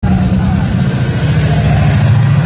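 Gas chainsaw engine running loudly and steadily, a low pulsing drone.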